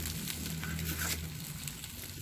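Chicken leg quarters sizzling on foil over a charcoal grill, with faint crackles, over a low steady hum that drops away after about a second.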